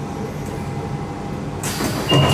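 1992 Stock London Underground train standing at a platform, heard from inside the carriage: a steady low hum from the train's equipment. About one and a half seconds in comes a sudden loud rushing noise as the sliding doors start to open.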